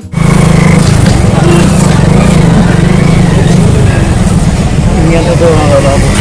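Street traffic noise: vehicle engines running with a loud, steady low rumble. Voices come in near the end.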